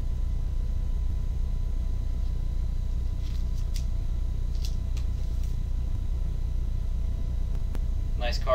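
Steady low hum of room background noise, like a fan or air conditioner running, with a few faint light ticks in the middle as a trading card in a plastic sleeve is handled and turned over.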